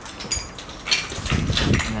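Footsteps crunching and scuffing over a floor of broken ceiling tiles and debris, with a brief light clink about a third of a second in.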